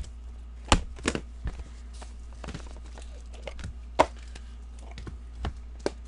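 Gloved hands handling trading-card packaging: a scattered run of sharp clicks and taps, the loudest a little under a second in and about four seconds in, over a steady low hum.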